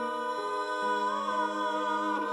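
A woman and a man singing long held notes in harmony into microphones, amplified over the stage sound system, with one voice wavering with vibrato partway through.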